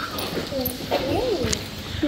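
Indistinct voices talking in the background, no clear words.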